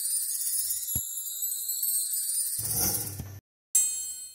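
High, shimmering chime-like music that cuts off suddenly, followed near the end by a short bright ding that rings and fades, the kind of sound effect that goes with a subscribe-button animation.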